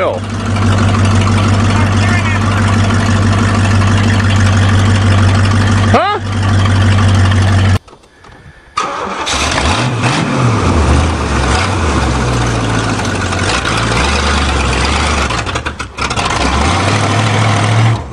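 Old Oldsmobile sedan's engine idling steadily, then cutting out about eight seconds in and starting again a second later, running on with revs rising and falling as the car pulls away.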